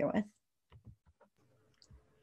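A woman's voice finishes a word, followed by a few faint, short clicks against near silence with a faint steady hum.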